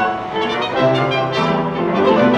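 Live chamber ensemble playing: bowed strings of a string quartet together with a trumpet, in a melodic passage of changing notes.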